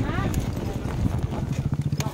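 Motorcycle engine idling with a rapid, even putter.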